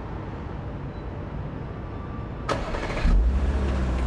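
Car engine starting: a brief burst of starter noise about two and a half seconds in, then the engine catches and runs with a steady low hum. Before it, a faint steady rumble.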